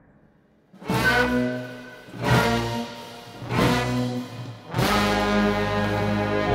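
Music: brass instruments play four loud, stacked chords. They enter about a second in, roughly a second and a half apart, and the last one is held.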